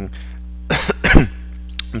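A man coughing twice in quick succession, the second cough louder, over a steady low electrical hum.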